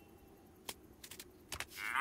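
A few faint clicks of a tin can being handled, then near the end a loud, low mooing note rises in as the can is tipped up, like a moo-box toy.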